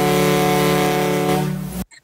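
A ship's horn sounding one long, steady blast of several notes at once over a hiss, which cuts off sharply near the end.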